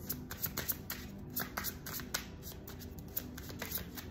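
Tarot deck being shuffled by hand: a quick, irregular run of card flicks and clicks.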